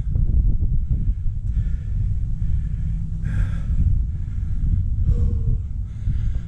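Wind buffeting the microphone in a steady low rumble, with a person's breathing coming through it a few times in the first half.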